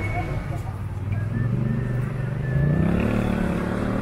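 Engine of a passing road vehicle, its pitch climbing as it accelerates about two and a half seconds in, over people talking in the background.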